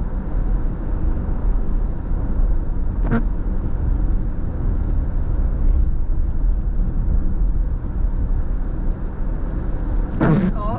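Steady road and tyre noise heard inside a car driving on a wet road, mostly a low rumble, with a short sharp click about three seconds in.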